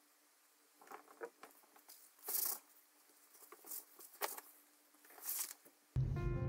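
Corset lacing cord being pulled through metal grommets and the coutil fabric handled: a few short, scattered rustling swishes, the loudest about two and a half seconds in, over a faint steady hum.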